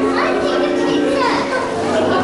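Children's voices and chatter in a busy room, with background music playing.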